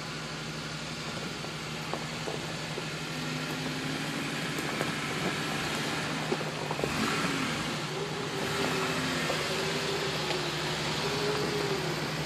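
A Jeep Wrangler's engine runs at low revs as the Jeep crawls up a dirt trail, growing slowly louder as it comes closer. From about halfway through, its note rises and wavers as the throttle changes.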